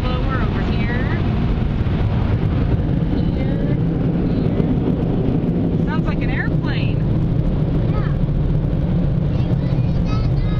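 Steady low rumble inside a car as it rolls out of an automatic car wash and onto the lot, with brief children's voices now and then.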